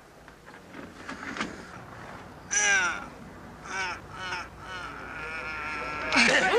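Harsh, strained cries of effort from men arm-wrestling: a loud wavering cry about two and a half seconds in, then shorter ones around four seconds, over a low crowd murmur, with a steadier held cry near the end.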